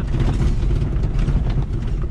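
Suzuki Jimny driving slowly over a rough gravel track, heard from inside the cabin: a steady low rumble of engine and tyres on loose stones.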